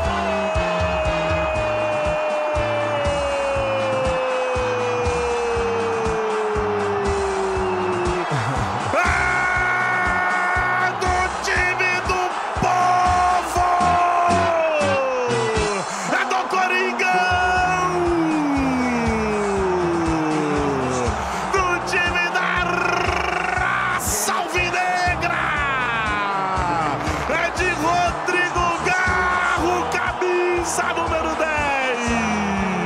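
A football radio narrator's long drawn-out goal shout, held for several seconds with its pitch slowly falling, then more falling shouts, over a music bed.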